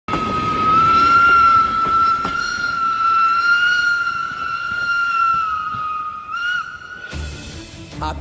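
Steam locomotive whistle blowing one long, steady blast over a low rumble, cutting off about a second before the end.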